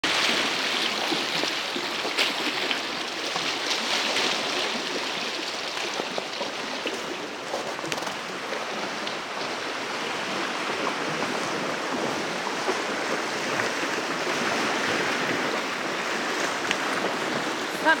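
Steady rush of lake water washing against the shore, with a few short sharp ticks over it.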